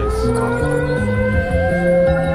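Video slot machine playing its free-spins bonus music: stepped low bass notes under a long, slowly rising siren-like tone, with a warbling tone joining about one and a half seconds in.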